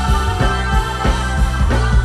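Live funk band playing an instrumental passage: the drum kit keeps a steady beat under saxophone, electric guitars and bass.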